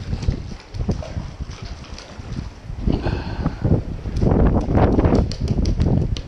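A hooked redfish thrashing as it is landed: water splashing, then a fast run of knocks and slaps as the fish flops on wooden dock planks, loudest in the second half. Wind buffets the microphone.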